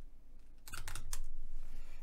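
Typing on a computer keyboard: a quick run of several keystrokes starting a little under a second in.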